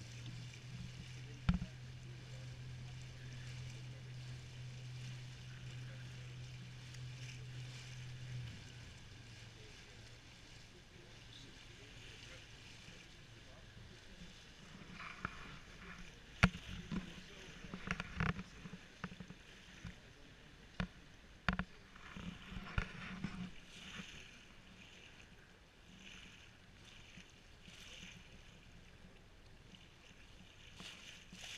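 Small canal tour boat's motor running with a steady low hum that fades away about eight seconds in, over the wash of water along the hull. About halfway through, voices from a passing tour boat and several sharp knocks.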